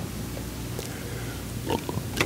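A pause in speech: room tone with a steady low hum, and a faint brief sound near the end.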